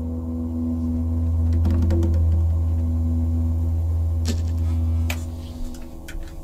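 A live instrumental band's closing held note: a low, steady tone with fainter notes above it, swelling slightly and then fading out a little after five seconds in, with a few soft clicks.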